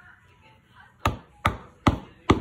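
Three quick mallet blows driving a brass decorative upholstery nail into a fabric-covered headboard, starting about a second in, a little under half a second apart.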